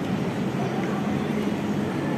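Steady low hum of a large indoor hall's background noise, with no sudden sounds.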